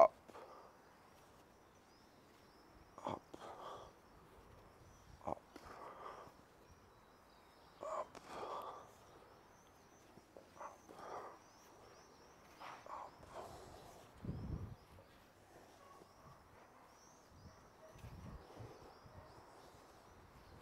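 Faint outdoor ambience: a steady run of small high bird chirps, with scattered soft scuffs and thumps now and then.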